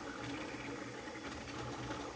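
A modded Voron 0.2 CoreXY 3D printer running a fast print: a steady rush from its part-cooling fans with the flickering mechanical hum of the moving toolhead. It is around 90 decibels at the printer, mostly from the part-cooling fans.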